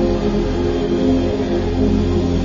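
Background music: a held ambient chord, steady and unchanging, over a low droning bass.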